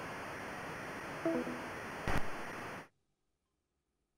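Steady hiss of a remote guest's call line, with a short scrap of voice and a click about two seconds in, then the line cuts off suddenly to dead silence just before the three-second mark: the call dropping.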